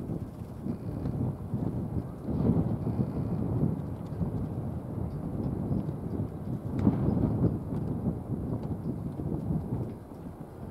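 Wind rumbling on the microphone, a low steady buffeting that swells in two gusts, a few seconds in and again near the end.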